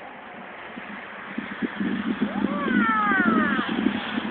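Wind buffeting the phone's microphone, growing louder from about a second and a half in, with a high voice calling out in rising and falling tones over it.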